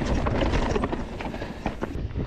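Mountain bike riding fast over rough rock, its tyres and frame giving a run of irregular knocks and rattles over a steady rush of wind noise on the microphone.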